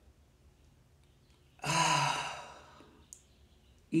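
A woman's deep breath out as one audible, voiced sigh, starting about a second and a half in and trailing off over about a second.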